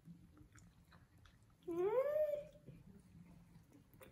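Faint chewing and small mouth and utensil clicks during a meal, with a short hummed "mmm" from a voice about two seconds in that rises and then falls in pitch.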